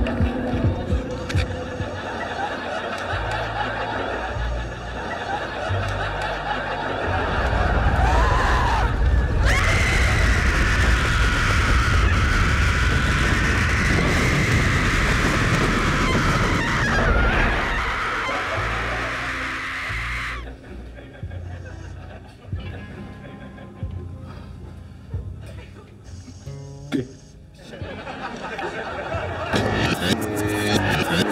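Low, throbbing drone, then about eight seconds in a loud rushing roar swells up with a long, wavering woman's scream over it, a dramatic soundtrack effect. The roar cuts off suddenly about twenty seconds in, and the low drone returns with scattered clicks.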